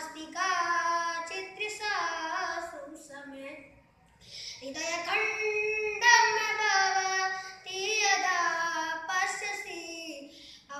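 A boy singing solo and unaccompanied, a Bollywood song in Sanskrit translation, in long held, sliding notes with a breath pause about four seconds in.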